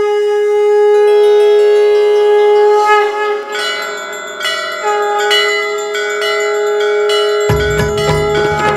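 Conch shell (shankh) blown in a long steady note, breaking off about three seconds in and sounding again for a second long blast, while temple bells are struck over and over from about three seconds in. Low, deeper sounds come in near the end.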